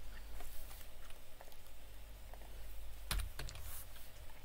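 Typing on a computer keyboard: scattered keystrokes, with a louder cluster of clicks about three seconds in, over a steady low hum.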